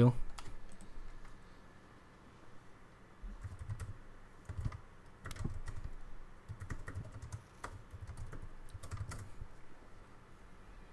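Typing on a computer keyboard: scattered, irregular key clicks with soft low knocks, as a passage is searched for and looked up.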